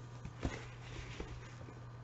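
Faint handling noise of lace doily books being held and moved in the hands, with a soft knock about half a second in and a few light ticks around a second in, over a steady low hum.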